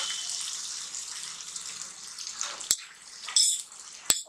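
Tomato-onion masala sizzling in oil in a pan, a steady hiss that fades over the first two seconds or so: the masala has been fried until the oil separates. Near the end a spatula clicks and clinks against the pan a couple of times.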